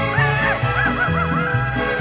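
Mariachi band playing a ballad, with a high melody of quick arching pitch bends over a steady rhythmic bass line.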